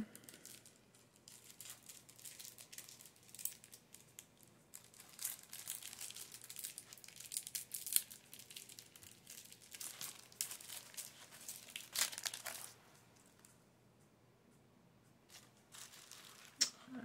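Crinkly material handled by hand: irregular rustling and crinkling, with a few sharper crackles, that stops about three seconds before the end.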